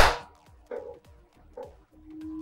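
A single sharp hand snap right at the start that dies away quickly, followed by near quiet with two faint short sounds.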